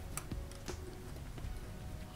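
A few faint small clicks as a scalpel blade cuts plastic railing parts off their sprue against a hard work surface.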